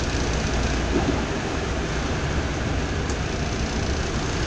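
Steady noise inside a vehicle cab in heavy rain: the engine runs with a low rumble under an even hiss of rain on the roof and windscreen.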